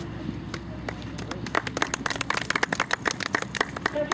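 A small group of spectators clapping, starting about a second and a half in and running dense and irregular to the end, over low steady outdoor background noise.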